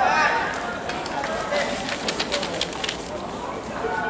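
Players' voices calling and shouting across an outdoor football pitch, loudest at the start, with a quick run of about eight sharp clicks between two and three seconds in.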